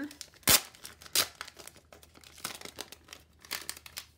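Crinkling and crackling of a translucent sticker-pack sleeve as it is opened and the sticker sheets are slid out, with the sharpest crackles about half a second in and again a little after one second.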